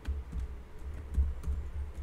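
Computer keyboard being typed on: irregular keystrokes, each a short click with a low thud.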